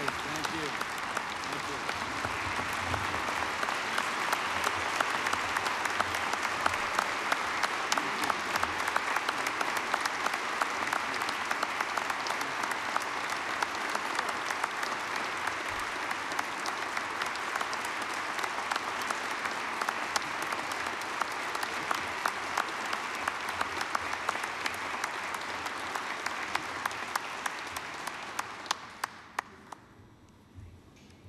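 Large audience applauding, a dense steady patter of many hands clapping. It thins out to a few last separate claps near the end.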